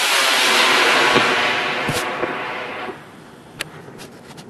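Estes black-powder model rocket motor burning at liftoff: a loud, steady rushing hiss that fades away about three seconds in as the rocket climbs.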